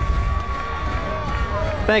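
Outdoor football field ambience picked up by a live broadcast microphone: a dense low rumble with faint distant voices. A thin steady tone runs under it and drops out about a second and a half in, and a man's voice starts right at the end.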